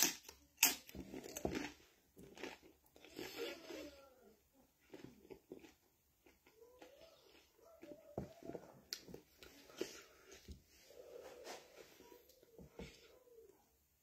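A man chewing and eating a mouthful of very hot curry: wet mouth clicks and lip smacks, loudest at the start, with a few faint high-pitched whine-like sounds around the middle and near the end.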